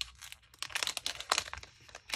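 A small plastic bag of metal charms being pulled open by hand: a click, then a quick run of sharp crinkles and crackles through the second half.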